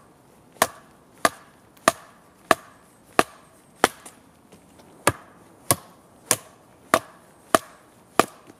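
Schrade Makhaira brush sword chopping into a thin standing sapling: about eleven sharp blade-on-wood chops in a steady rhythm, roughly one and a half a second, with one brief pause about halfway through.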